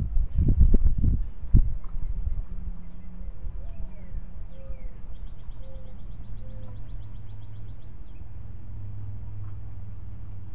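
Songbirds calling, including a rapid high trill of about seven notes a second, over a steady low hum. A few low knocks sound in the first second and a half.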